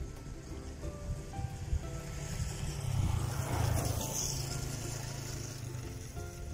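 Background music with steady held notes. Under it, a low hum builds from about halfway, swells loudest around three to four seconds in, and dies away near the end.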